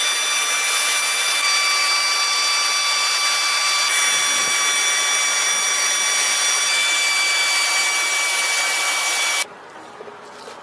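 Pneumatic air ratchet running steadily on a bolt at the front of an engine block, a hissing whine with a few fixed high tones. It cuts off abruptly near the end.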